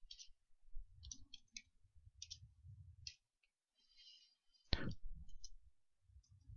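Computer keyboard keys clicking faintly in short irregular runs as a line of code is typed, with one louder sharp knock a little before the end.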